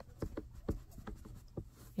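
Handling noise from a metal pacifier clip being fastened onto a muslin cloth: several faint, light clicks and scratchy rubbing of metal and fabric.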